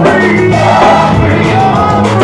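Gospel choir singing loudly with a live band.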